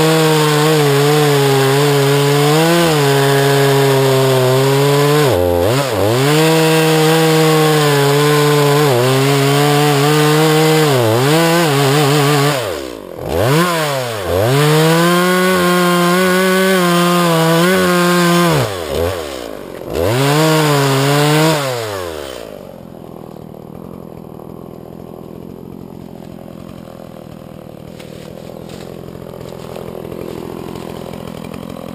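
Stihl MS 180 C two-stroke chainsaw at full throttle, cutting into a standing tree trunk. Its engine note dips and climbs back several times as the throttle is eased and opened again. About three-quarters of the way through, the saw's sound drops away, leaving much quieter background.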